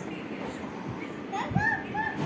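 A small child's voice: a short high-pitched vocalization about one and a half seconds in, over steady background noise.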